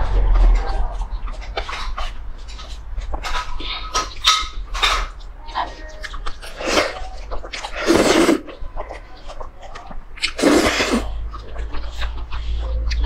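Close-miked eating of saucy instant noodles: wet chewing and lip smacks, broken by three long slurps in the second half. A steady low hum runs underneath.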